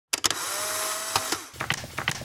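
Polaroid OneStep instant camera: a shutter click, then its motor whirring steadily for about a second and a half as the print is pushed out, ending in a few light clicks.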